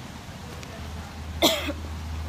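A woman coughs once, short and sharp, about one and a half seconds in, over a steady low hum.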